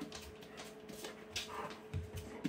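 German Shepherd whimpering close by, with light scratchy ticks on the floor and cardboard toy box.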